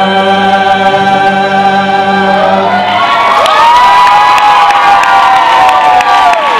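A vocal group holds the song's final chord, which cuts off about halfway through; the audience then cheers, with high whoops rising and falling over it.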